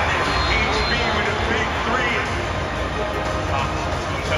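Music with a steady bass line and spoken voice clips, played over an arena's loudspeakers as the soundtrack of a video on the scoreboard.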